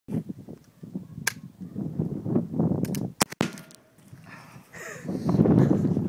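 A .45-calibre percussion-cap black powder rifle: a click as the hammer falls on an old, damp cap that fails to fire, then the hammer is cocked again and a single sharp shot goes off about three seconds in. A louder rough noise follows near the end.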